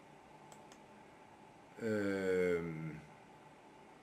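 A man's voice holding one drawn-out vowel, a hesitation sound, for about a second near the middle, its pitch sinking slightly. Otherwise low room sound with two faint clicks near the start.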